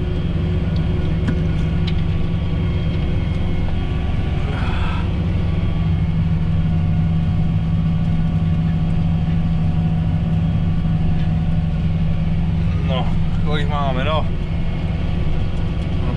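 John Deere tractor's diesel engine running steadily under load while pulling a Horsch seed drill, heard from inside the cab as an even, low drone.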